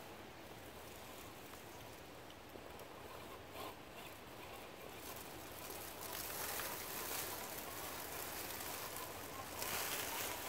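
Axial SCX10.2 RC crawler's tyres crackling over dry leaves and twigs as it crawls, faint at first and growing louder from about halfway through as it nears.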